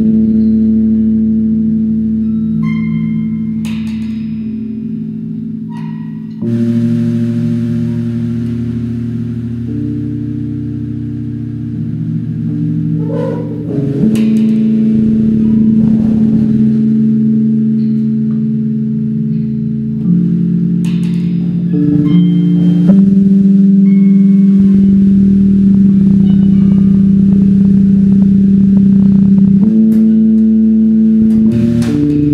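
Instrumental music from a band playing live: long held low chords on electric guitar and keyboard that change every few seconds, with a few short struck accents, getting louder about halfway through and again near the end.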